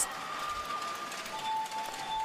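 Low background hubbub of an arena crowd under a faint, held musical note.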